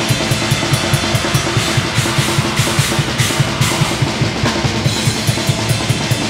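Drum kit played live in a heavy metal band, close up on the kit: quick, steady bass drum beats under snare and cymbals. Evenly spaced cymbal ticks give way to a dense cymbal wash from about two to four seconds in, then return.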